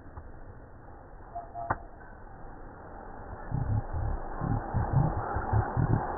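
Wind buffeting the microphone outdoors: a run of irregular low thumps with a rushing noise that builds about halfway through, after a single sharp click.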